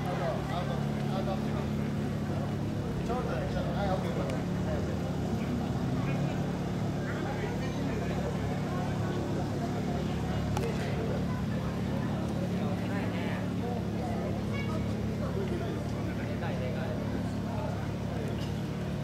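A vehicle engine idling with a steady low hum, under scattered voices of people.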